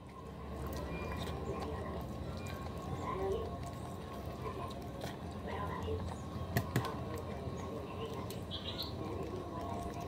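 Eating by hand: chewing and mouth noises while fingers work rice on a plate, over a steady low hum. There are two sharp clicks close together about six and a half seconds in.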